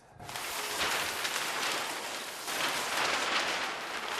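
A large sheet of drawing paper rustling and crackling as it is handled.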